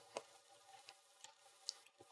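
Near silence with a few faint clicks of a computer mouse: a distinct click just after the start, another near the end, and some fainter ticks between them.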